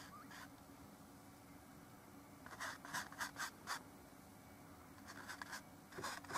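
Paintbrush laying oil paint onto canvas: a quick run of about five short brushing strokes a little before midway, and a few fainter strokes near the end.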